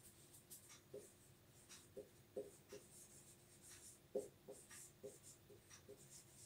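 Marker pen writing on a whiteboard: faint, short squeaks and scratches of the tip at irregular intervals.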